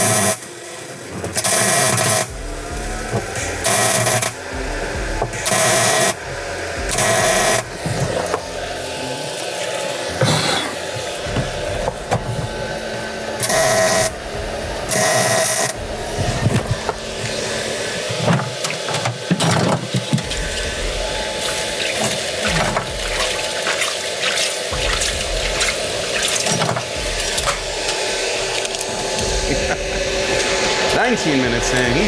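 MIG welder arc crackling in short bursts of a second or so each, as a nut is welded onto a broken bolt to get it out. From about halfway the crackle runs on longer and more steadily.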